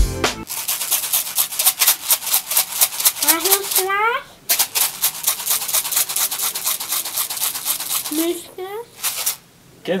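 Dry uncooked rice shaken in a plastic food container, a fast continuous rattle of grains with a short break partway through; it stops shortly before the end. A voice is heard briefly twice.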